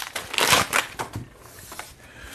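Crinkling and crackling of plastic being handled: a clear plastic bag and small plastic parts. It is loudest in the first second, then dies down.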